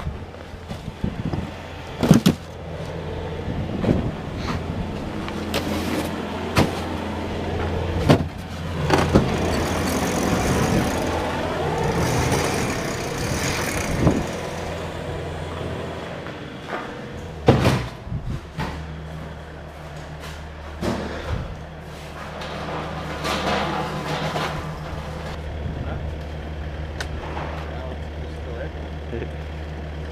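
Plastic fish totes knocking and clattering as they are handled and stacked, with sharp knocks about 2, 4, 8 and 17 seconds in, over a motor running steadily in the background.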